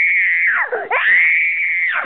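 A young girl screaming: two long, high-pitched held screams with a brief drop in pitch between them.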